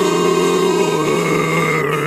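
A man's long, drawn-out throaty groan, held as one sound with its pitch slowly falling.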